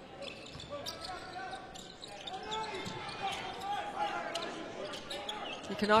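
A basketball being dribbled on a hardwood court, a series of sharp, irregularly spaced bounces, over a low murmur of crowd voices in the arena.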